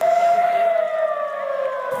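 Civil-defence air-raid siren wailing, one steady tone whose pitch slowly falls over about two seconds: a rocket-alert siren warning of incoming rockets, missiles or drones.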